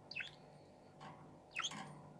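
Pet budgerigar giving two short chirps, each falling sharply in pitch, about a second and a half apart.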